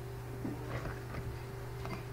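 Faint steady low hum with a few light clicks.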